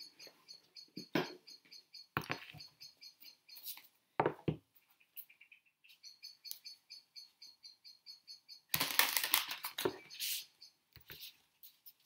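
A deck of cards being shuffled and handled by hand: scattered flicks and clicks, with a dense run of rapid card rustling about nine seconds in. A small bird chirps repeatedly and faintly in the background.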